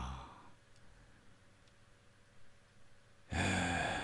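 A person's sigh, starting suddenly about three seconds in after a near-silent pause, then fading away.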